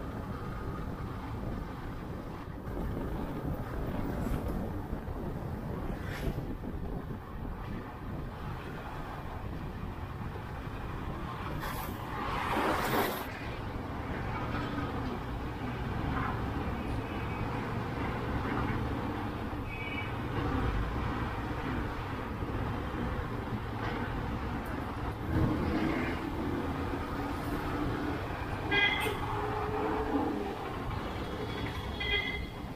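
Motorcycle riding along a highway: steady engine, tyre and wind noise. A louder rush about 13 seconds in, and a few short high-pitched sounds near 20 and 29 seconds.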